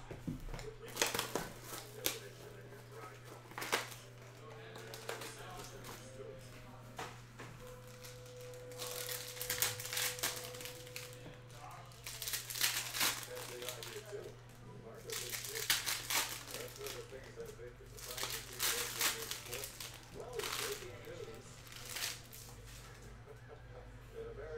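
Trading-card pack wrappers being torn open and crinkled by hand, in several short bursts of crinkling, over a steady low hum.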